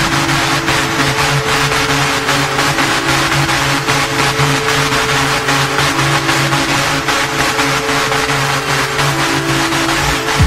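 Hardstyle electronic music, a dense, noisy synthesizer section without a kick drum: held synth chords shift pitch every second or two under a gritty, buzzing wash.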